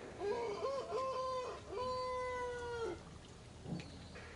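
Infant macaque crying: several short, wavering calls, then one longer, steady call that stops about three seconds in.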